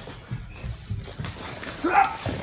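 Wrestlers scuffling on a training mat: scattered low thuds of feet and bodies, with a short grunt near the end.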